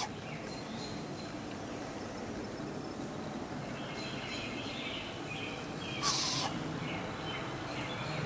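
Faint bird chirps over a steady background hiss, with one short, harsh, hissy burst about six seconds in.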